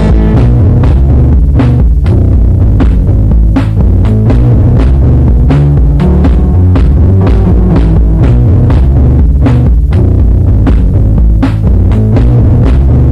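Drum-machine music from a Roland Boss DR-5: a loud, deep bass line stepping between notes over a steady beat of about two drum hits a second.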